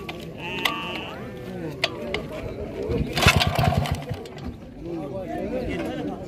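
The small engine of a motor water pump being pull-started: about three seconds in it turns over in a quick run of pulses for about a second, then does not keep running.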